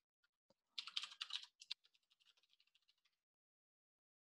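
Typing on a computer keyboard: a single keystroke, then a quick run of keystrokes about a second in, trailing off into fainter rapid taps.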